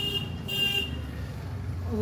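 Two short vehicle horn toots, one at the start and one about half a second later, over a low traffic rumble.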